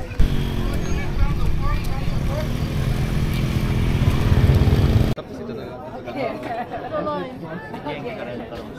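A motor vehicle's engine running close by, loud and steady, growing a little louder until it cuts off suddenly about five seconds in; people's voices follow.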